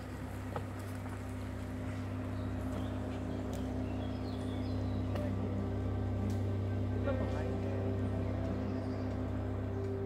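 Car engine running and tyres rolling slowly along a dirt forest track, heard from inside the cabin as a steady low hum.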